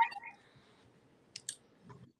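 Two faint, quick clicks of plastic Lego pieces about a second and a half in, as a built Lego dragon model is lifted and handled.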